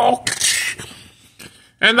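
A man's long, falling shout trails off, followed by a hissing rush of noise that fades away over about a second. Near the end he starts speaking again.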